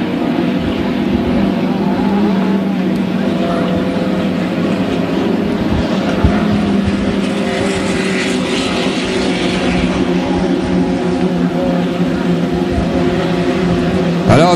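Racing engines of 1.5-litre-class hydroplanes running at full speed on the course, a steady high-revving drone whose pitch wavers slightly, with a hiss that grows brighter about eight seconds in.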